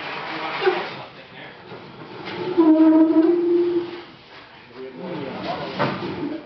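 Knocks and handling noise as a large wooden stage gangway is shifted by hand. A steady held tone lasts just over a second in the middle and is the loudest sound.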